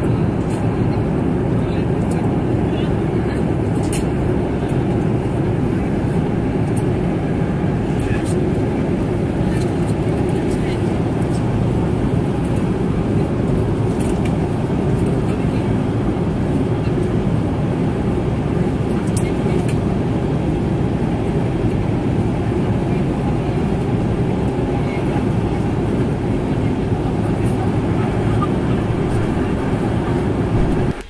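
Steady airliner cabin noise: a low, even rush of air from the cabin ventilation, with passengers' voices in the background and a few light clicks and knocks.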